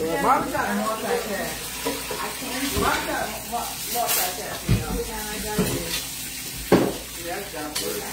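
Food frying in hot oil in a skillet, sizzling steadily, with a few knocks of kitchenware about three, five and seven seconds in.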